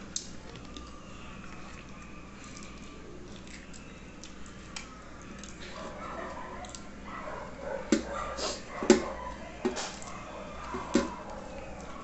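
Wet chewing and mouth clicks from someone eating meat and farofa by hand. From about halfway in there is a faint, wavering high-pitched whine, with several sharp smacks near the end.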